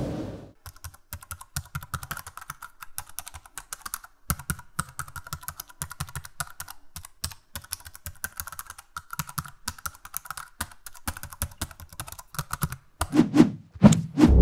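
Typing on a laptop keyboard: quick, irregular key clicks, with a few louder knocks near the end.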